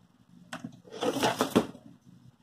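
Cotton fabric strips rustling and sliding over a cutting mat as a strip is picked up and laid in place. The rustle lasts about a second, in the middle.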